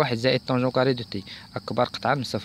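A man speaking: speech only.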